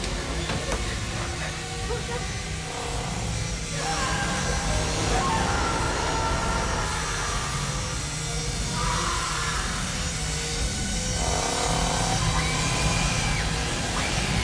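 Horror film soundtrack: tense music over a continuous low rumble, with held cries or voices that rise and fall several times.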